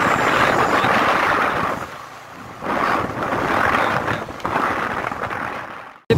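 Wind rushing over the microphone of a moving motorcycle, a loud steady rush of noise that drops away for about a second near the middle and fades out at the end.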